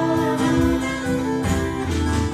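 Live instrumental passage: a strummed twelve-string acoustic guitar with a violin playing long held notes over it.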